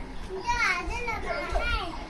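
A young child's high-pitched voice in a run of short, bending sounds without clear words, as children play.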